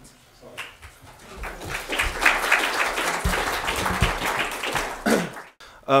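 Audience applauding. The clapping builds about a second in, holds for about four seconds, then dies away and drops out abruptly near the end.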